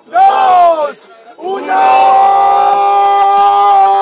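Young men shouting the end of a countdown in a rap battle: a short shout at the start, then a long drawn-out shout held at one steady pitch for about two and a half seconds.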